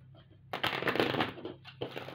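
A tarot deck being riffle-shuffled by hand. A dense flutter of cards starts about half a second in and lasts about a second, followed by a few softer card clicks near the end.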